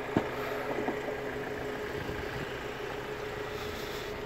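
Ford Transit Custom's Euro 6 diesel engine idling steadily, with a sharp click just after the start and a fainter one about a second in.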